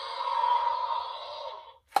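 Jurassic World Indominus Rex toy dinosaur playing its electronic roar through its small speaker: one long roar, thin and without bass, that fades out near the end.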